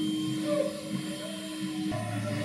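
Ensemble music made of long held, drone-like tones from the winds and accordions. A steady mid-pitched note stops near the end as a lower held note comes in.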